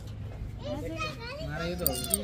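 Indistinct voices, with a young child's voice among them, and a couple of sharp clicks near the end.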